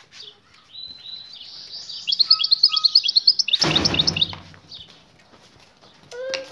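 European goldfinch singing a fast, high twittering song that starts about a second in and builds to a run of rapid repeated notes. Near the middle there is a brief loud rustle.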